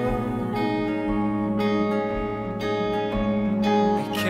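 Acoustic guitar playing the song's chords, the chord changing about every half second.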